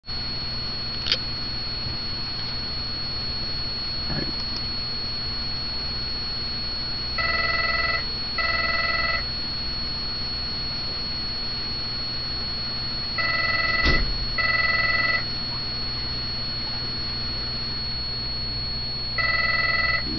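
A telephone rings in double rings: one pair about seven seconds in, another about six seconds later, and a third starting near the end. Under it run a steady low hum and a faint constant high-pitched whine, with a sharp click about a second in.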